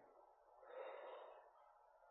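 Near silence, with one faint breath-like exhale into a microphone lasting about a second.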